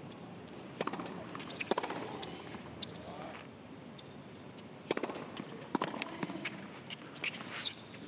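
Tennis ball struck by racquets in a rally on a hard court, a sharp pop roughly every second with a lull in the middle, over a faint steady background.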